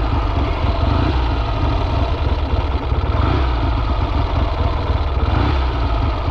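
1971 Triumph Trophy TR6C's 650 cc single-carburettor parallel-twin engine running steadily at idle.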